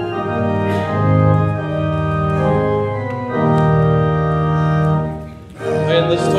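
Church organ playing a hymn introduction in held chords that change every second or two, with a short break near the end before the next phrase begins.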